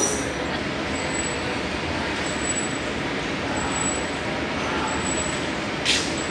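Laminar air flow cabinet's blower running with a steady rush of air, with a small sharp click near the end.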